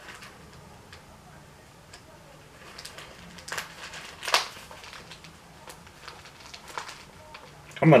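Pocket knife slitting open a padded mailer and the package being handled: faint scrapes and rustles with a few sharper clicks, the loudest a little over four seconds in.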